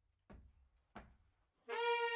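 Two sharp clicks about two-thirds of a second apart, in an even count-in, then near the end the big band's saxophones and brass come in together on a loud held chord.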